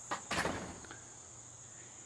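Crickets chirring steadily at a high pitch, with two brief scuffing sounds just after the start.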